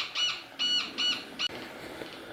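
Home-built Minipulse Plus pulse induction metal detector giving a run of about five short, high-pitched beeps in quick succession, ending about a second and a half in. The beeps are its response to a 20 cent coin passed over the coil at a bit more than thirty centimetres.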